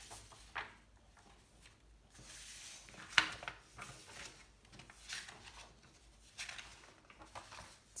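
Printed paper sheets being handled and folded on a table, with soft intermittent rustling and a single sharp tap about three seconds in.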